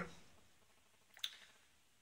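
Brunton Hydrolyser hydrogen refill station running, near quiet, with a single short gurgle of a bubble in its water chamber about a second in. The gurgling is a normal sound of the unit while it generates hydrogen.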